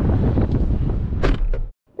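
Wind buffeting a lapel microphone outdoors, a loud, uneven low rumble with a brief sharp sound about a second and a quarter in; it cuts off suddenly shortly before the end.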